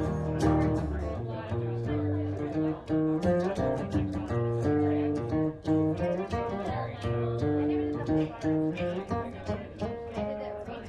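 Acoustic guitar played solo: an instrumental passage of picked notes and chords that change about every half second, with no singing.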